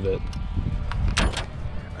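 A brief clatter of sharp knocks about a second in, over a low steady rumble, as gear is handled in a small fishing boat.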